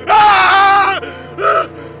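A man screaming in anguish: one long, loud cry lasting about a second, then a shorter cry about half a second later.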